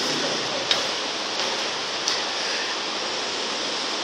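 Steady background hiss with no speech, broken by two faint clicks, one under a second in and one about two seconds in.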